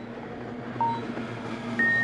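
Boat race start-clock signal: a short beep about a second in, then a longer, higher beep near the end as the clock reaches zero, over the steady drone of the racing boats' outboard engines.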